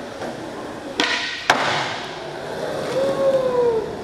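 Skateboard popped off a concrete floor and landing about half a second later, two sharp clacks, then its wheels rolling on the concrete.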